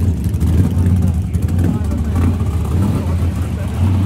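Dirt modified race car engines running steadily at a low idle as the cars roll through the pits.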